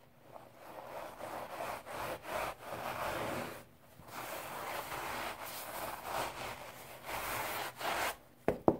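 Dry Ajax scouring-powder crumbles rubbed and scraped by hand, a series of gritty scraping strokes with a short pause about halfway through.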